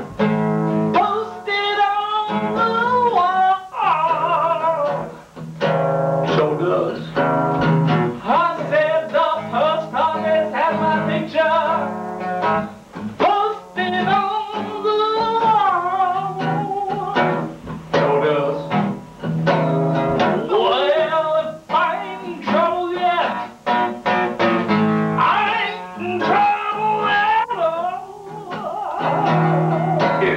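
Acoustic guitar strummed in repeating chords, with a man singing an improvised song over it.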